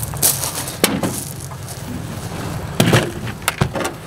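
Rocks clattering and knocking inside a plastic five-gallon bucket as it is lifted and set down on a pickup truck bed: a few sharp knocks, the loudest near three seconds in, over a low steady rumble.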